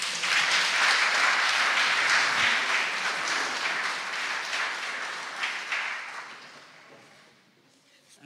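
Congregation applauding, loudest at the start and dying away gradually over about seven seconds.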